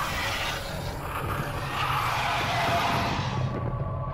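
Dramatic intro music with a steady low beat, overlaid by a loud noisy sound effect that fades out about three and a half seconds in.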